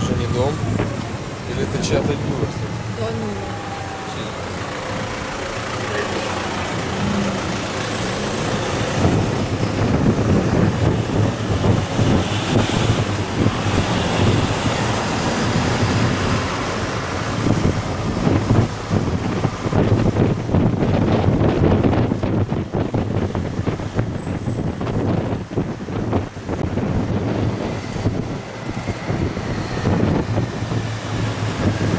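City traffic and a bus engine running, heard from the upper deck of a sightseeing bus, with wind buffeting the microphone.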